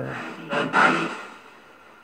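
SB7 spirit box sweeping through radio stations: a short burst of static carrying an unclear, garbled fragment in the first second, then dying down to a low hiss.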